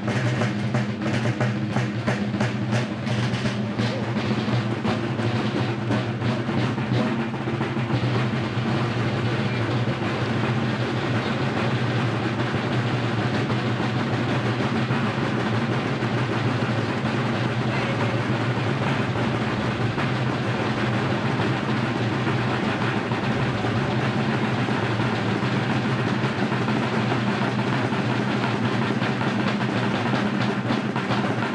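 Brass-shelled rope-tension field drums playing a continuous roll, with distinct separate strokes for the first several seconds before it settles into a smooth, even roll.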